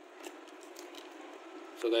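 Faint scissors cutting clear packing tape at the bottom of a cardboard tube box, with a couple of light snips. A man starts speaking near the end.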